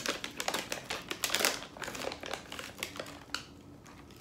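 A Hershey's Drops candy pouch being opened and handled: a quick, irregular run of crinkles and crackles from the packaging, thinning out near the end.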